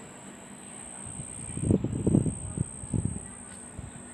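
Crickets chirping in a steady high-pitched drone. About a second and a half in, a louder irregular low rumbling with a few knocks lasts for roughly a second and a half.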